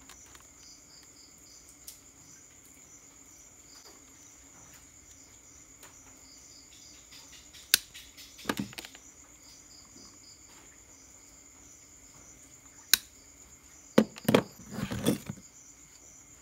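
Crickets chirping faintly and steadily in the background. A few sharp clicks and short knocks and rustles come from hands handling the drill's plastic battery housing and a hand tool: a click about halfway through, and a cluster of knocks near the end.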